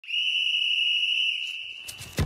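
A single long, steady high-pitched tone serving as an intro sound effect. It is held for nearly two seconds and fades out near the end.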